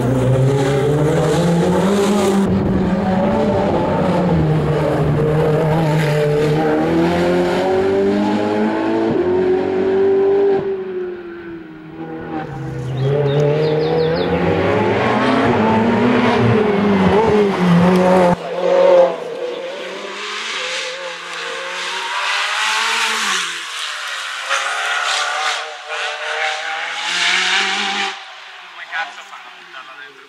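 Ferrari 488 Challenge Evo race car's twin-turbo V8 at racing speed, revs repeatedly climbing and dropping through gear changes and braking for chicanes. About two-thirds of the way through it turns thinner and more distant.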